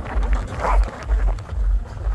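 Wind buffeting the microphone in low rumbling gusts about twice a second during a ski descent, with a short higher-pitched sound a little before the middle.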